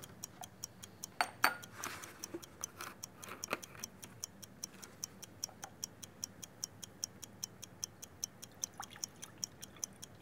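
Fast, even clock-like ticking, about four ticks a second, with a few knocks and clinks from beakers and plastic cups being handled in the first few seconds.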